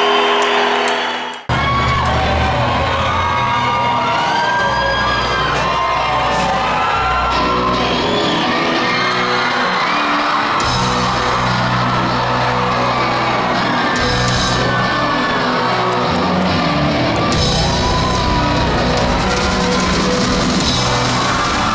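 A live rock band playing at full volume to a large crowd that whoops and yells over the music. About a second and a half in, the sound cuts abruptly to a different stretch of live music.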